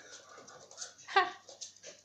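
Small dog spinning after its own tail, its claws ticking faintly on a laminate floor, with one short high yip about a second in.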